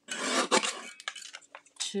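Sliding-blade paper trimmer cutting patterned paper: a short rasping scrape as the cutter head is pushed along the rail and through the sheet, followed by a few light clicks.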